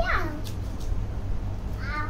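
A toddler's high-pitched wordless squeal, falling steeply in pitch, at the start, then a short high call near the end. A steady low hum runs underneath.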